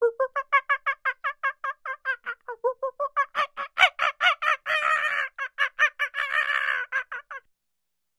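A fast, even series of short clucking animal calls, about six a second, with two longer, harsher calls in the second half. The calls stop about a second before the end.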